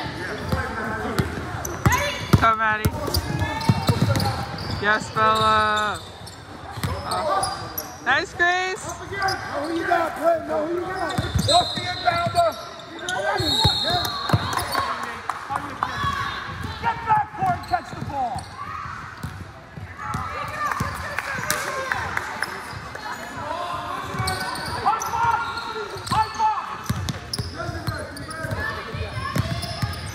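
Basketball game in a large gym: a ball bouncing on the hardwood floor and sneakers squeaking, under a steady mix of players' and spectators' voices and calls that echo in the hall.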